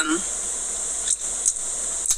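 Steady high-pitched background hiss, with two faint clicks a little after a second in.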